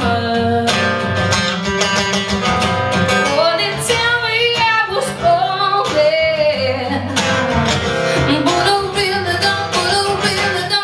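Live music: a woman singing over her own strummed acoustic guitar.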